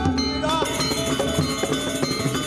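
Gamelan music: struck bronze metallophones and gong-chimes ringing in a quick, continuous pattern over low drum strokes.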